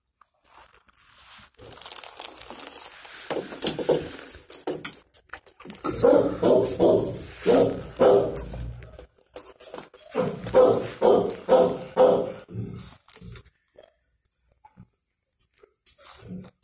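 A dog making two runs of quick, evenly repeated sounds, about three a second, a few seconds in and again near the middle, with light rustling around them.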